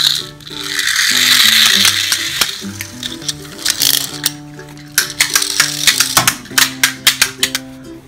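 Background music with a stepping bass line, over which small plastic pull-back toy cars are heard: a brief whirr of a car's wind-up motor about a second in, then rapid rattling clicks in the last few seconds as a car is pulled back across the floor.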